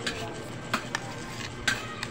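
Metal spoon and fork clinking and scraping against a plate while scooping up rice, with about four sharp clinks, two of them close together midway.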